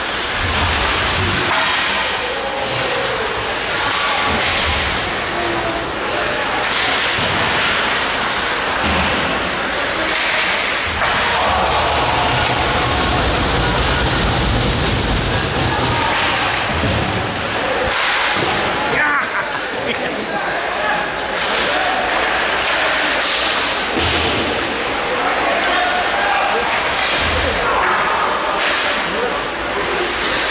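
Ice hockey play in a rink: skate blades scraping the ice, sticks and the puck clacking, and repeated thuds of the puck and players against the boards, with indistinct voices calling out.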